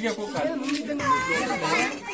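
Several people talking and calling out over one another.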